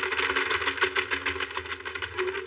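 Cartoon soundtrack: a fast, even rattle of clicks, about a dozen a second, over sustained low musical notes.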